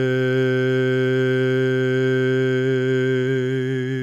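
A man's voice intoning one long, steady low note on a single breath, a letter of the Pentagrammaton chanted as a meditative intonation.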